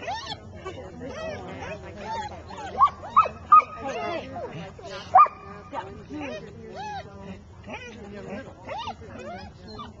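A dog yipping and whining over and over in short high calls, with a few sharp, loud yips in a cluster around the middle.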